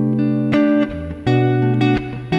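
Clean electric guitar played fingerstyle: a Stratocaster-style guitar with Wilkinson ceramic pickups through a NUX Mighty 8BT amp, with bass notes and chord tones plucked together and left to ring. New chords are plucked about half a second in and again at about 1.3 seconds.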